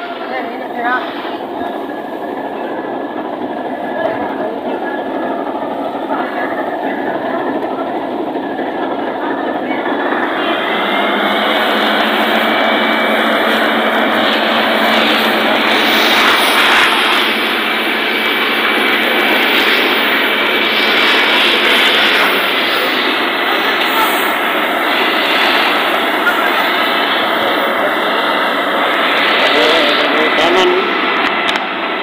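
Fire truck engine driving its water pump to feed the hoses: a steady, loud rushing drone that grows louder about ten seconds in.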